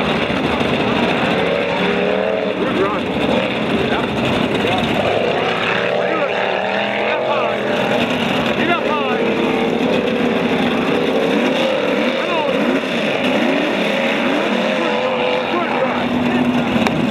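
The 350 small-block V8 of an off-road 1985 Chevy pickup, heard from a distance as it races over a dirt course, its revs rising and falling with the throttle. Voices are heard along with it.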